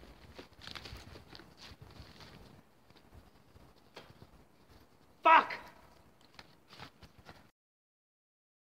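Crunching of snow and brush as a person scrambles up out of deep snow among branches, then quieter steps in snow. About five seconds in comes one short, loud vocal cry, and the sound cuts off just before the end.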